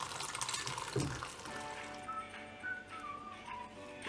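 Pressure-cooked dried peas and their cooking water poured into a pan of masala gravy: a liquid splashing pour over about the first second and a half. Soft background music with a gentle melody carries on after it.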